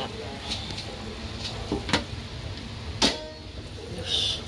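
Kitchen handling noise over a low steady hum: a few faint ticks and two sharp clicks, about two and three seconds in, the second louder and ringing briefly.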